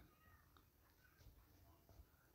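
Near silence: room tone, with a few faint, short high-pitched tones.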